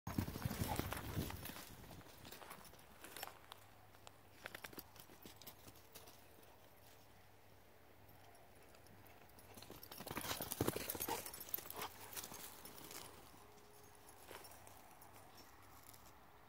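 Footsteps crunching and scuffing on dry dirt and scrub, in two busy bursts: one at the start and one about ten seconds in, with scattered single steps between.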